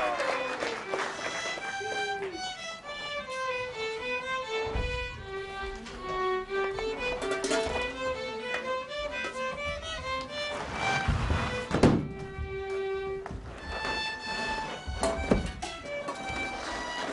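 Two violins play a lilting folk-style melody live on a stage. A few dull thuds sound partway through, the loudest about twelve seconds in, as performers land on the stage floor.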